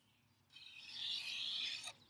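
A marker writing a number on paper: a scratchy rubbing that starts about half a second in and lasts about a second and a half.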